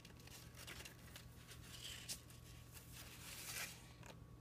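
Faint paper rustling as a small booklet's pages are opened and turned, in a few short brushes, the last one shortly before the end, over a low steady hum.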